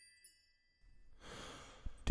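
A singer's audible breath in, lasting about a second and ending with a small click, taken just before he starts to sing. Near silence comes before it, as chime music fades out.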